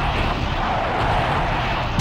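Sound effect of a swarm of missiles streaking in: a steady rushing roar of rocket motors over a low rumble.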